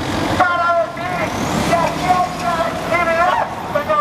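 Road traffic passing close by, a vehicle driving past with a steady low rumble of engine and tyres, with voices in the background.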